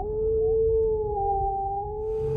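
A wolf howling: one long howl that rises at the start and then holds a steady pitch, over a low rumble.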